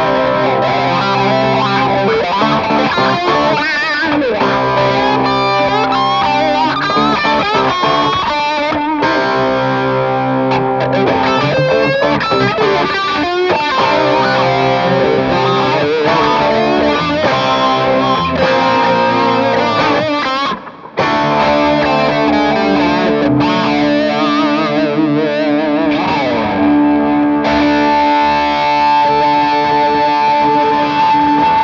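Gibson Firebird electric guitar played through a distorted Mesa Boogie amp: a lead line of quick runs and bent notes, with a short break about two-thirds of the way through and longer held notes after it.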